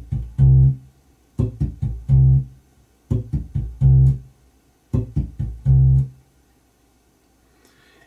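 Electric bass guitar playing a short raking groove four times. Each time the right hand rakes across the left-hand-muted strings for a few percussive clicks, then plucks a fretted C on the A string's third fret and lets it ring briefly. The last note stops about six seconds in.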